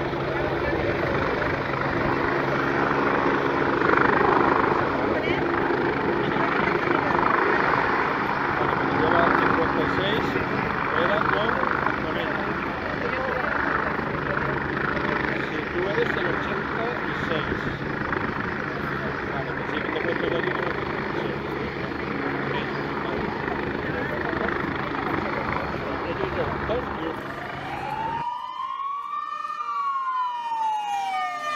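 AgustaWestland AW109 air ambulance helicopter, its rotor and twin turbine engines running steadily with slow swells as it hovers in and lands. Near the end the sound cuts off abruptly to a rising and falling siren tone.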